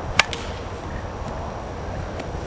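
A single sharp crack, typical of a plastic wiffleball bat striking the ball, then a much fainter tap near the end, over a steady outdoor rush.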